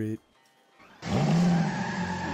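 Car tires-screeching sound effect with an engine note, starting abruptly about a second in after a short pause and staying loud: a peel-out as the toy car speeds off.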